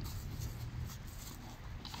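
Feet shuffling and scuffing on dry leaves and dirt as fighters move around each other, over a low steady rumble, with a few faint ticks near the end.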